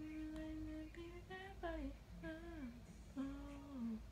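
A woman humming softly with her mouth closed: a long held note, then three short phrases that each slide down in pitch.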